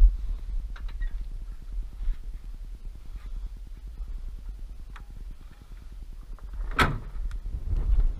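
A New Holland T6.155 tractor's bonnet being closed: a few light clicks, then the bonnet shutting with one loud bang about seven seconds in, over a steady low rumble.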